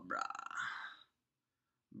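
A man's short, gravelly throat sound with a fast rattle, lasting about a second.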